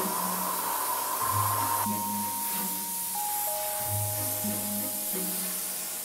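Compressed air hissing steadily from a handheld air blow gun fed by a coiled hose from an air compressor, over background music with a repeating low bass line.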